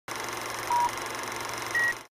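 Film countdown leader sound effect: two short beeps about a second apart, the second higher in pitch, over a steady crackly hiss.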